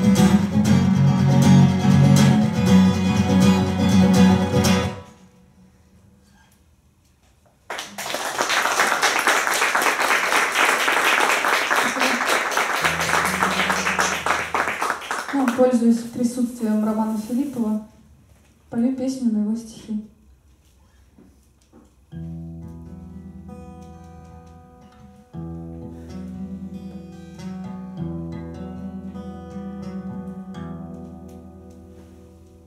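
Twelve-string acoustic guitar strummed through a song's last chords, stopping about five seconds in; after a short pause, applause for several seconds, a few spoken words, then from about 22 seconds the same guitar fingerpicking the opening notes of the next song.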